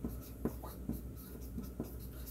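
Chalk writing on a green chalkboard: faint taps and scratches, several strokes about half a second apart, as characters are written.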